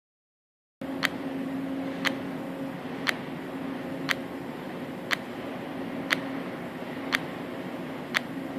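Blocker mechanism cycling, with a sharp, crisp click about once a second as its pin snaps back on the return, over a steady low hum. The return spring has been tightened half a turn, which gives this decided click on the return.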